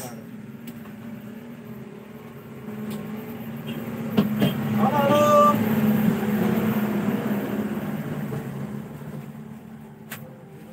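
A road vehicle passing by, growing louder to a peak about five seconds in and then fading away, over a steady low hum.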